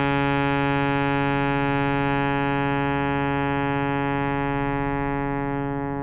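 A long, steady electronic drone chord from the piece's tape part, held without wavering and easing off slightly near the end.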